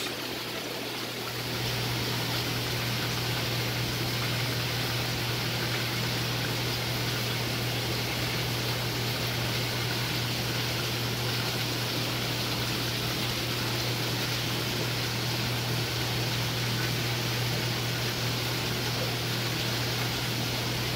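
Steady rush of water running through an aquarium system's plumbing, with a low steady pump hum; it grows louder about a second and a half in.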